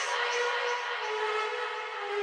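Instrumental passage of a trap track: sustained, siren-like synthesizer chords that step in pitch, with no drums or bass.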